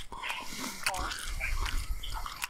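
Crunchy biting and chewing of a mouthful of raw iceberg lettuce, a scatter of small wet crackles.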